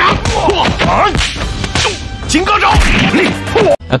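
Kung fu film fight soundtrack: fighters' short sharp shouts mixed with whooshing swings and thwacking blows over music. It cuts off suddenly just before the end.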